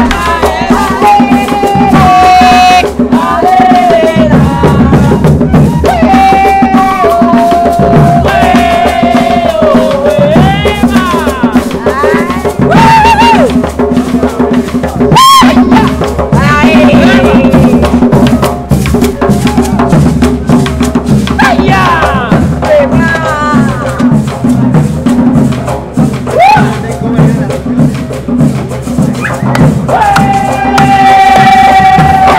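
Live street folk music: hand drums and shaker rattles in a steady, fast rhythm, with a high melody line of held, bending notes over it.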